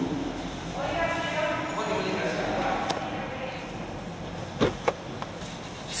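Two quick clicks from a Geely Okavango's glove box latch as it is opened, its lid swinging down slowly. Faint voices murmur in the background earlier on.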